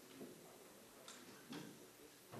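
Near silence: room tone with three faint short clicks and knocks, the last the loudest, from people handling things or settling in their seats.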